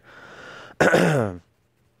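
A man clearing his throat once, about a second in: a short rasping sound that falls in pitch.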